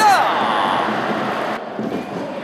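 Stadium crowd noise at a football match, starting as a commentator's drawn-out shout ends. About one and a half seconds in, the crowd sound drops suddenly to a quieter level.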